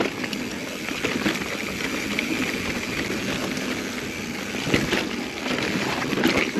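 Mountain bike rolling fast over a rocky dirt trail: a continuous rough rattle of tyres, chain and frame, with scattered knocks from rocks and a louder jolt about five seconds in.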